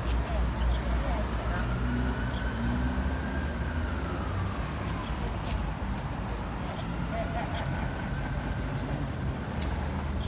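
Street traffic at a city intersection: a steady low rumble of passing cars, with a faint whine that rises and then falls in pitch over a few seconds.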